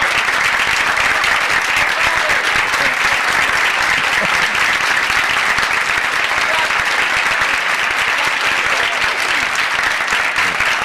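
Studio audience applauding loudly and steadily, a dense unbroken clapping that runs on without a pause.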